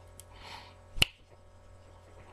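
Hands handling a plastic action figure: a faint tick, a brief rustle, then one sharp click about a second in.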